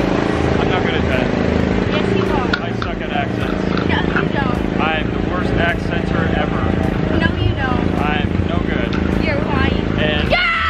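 Small gasoline engine of a Tomorrowland Speedway ride car running steadily under way, with voices and laughter over it.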